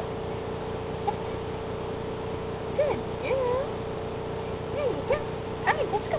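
Standard poodle whining in short, high, bending squeaks: a few around the middle and a cluster near the end.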